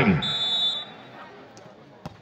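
Referee's whistle blown once, a short steady blast of just over half a second, the signal for the serve.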